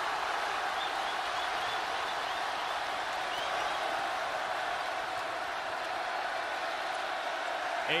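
Basketball arena crowd cheering, a steady din of many voices at an even level.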